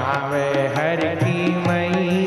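Hindi devotional bhajan: a man singing with gliding, held notes over steady instrumental accompaniment.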